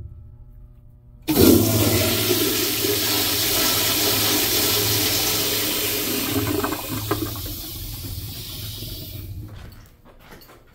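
Vintage Crane Santon toilet with a chrome flushometer valve flushing. A sudden rush of water starts about a second in, runs strongly for several seconds, then tapers off and stops near the end.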